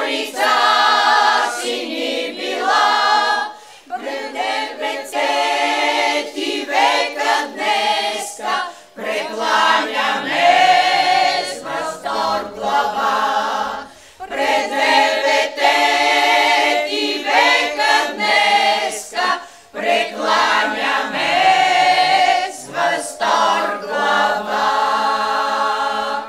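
Women's chamber choir singing a cappella, in phrases with short pauses between them.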